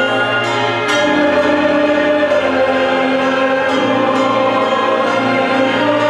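Mixed choir singing with a full symphony orchestra in held chords, the harmony shifting about a second in and again a little past halfway.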